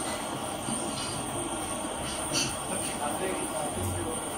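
Handheld kitchen blowtorch burning with a steady hiss, its flame caramelizing the sugar sprinkled on a custard dessert.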